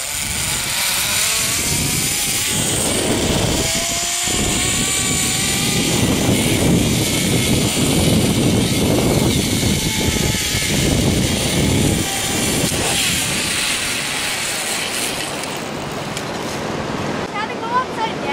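Zipline trolley running along a steel cable, a whirring whine that rises in pitch over the first few seconds, under a steady rush of noise.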